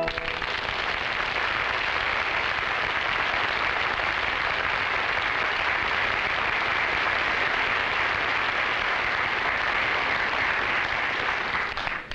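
Studio audience applauding after an operatic aria: steady clapping that cuts off abruptly near the end.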